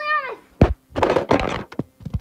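A phone being dropped: a sharp thunk about half a second in as it lands, followed by about a second of rubbing and scraping and a couple of lighter knocks as it settles face down.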